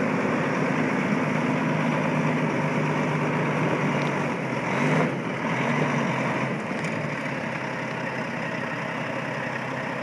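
Caterpillar C13 inline-six diesel in a Kenworth T800 semi tractor, running as the truck drives slowly. The engine note rises briefly about five seconds in, then settles back to a steady, slightly quieter run.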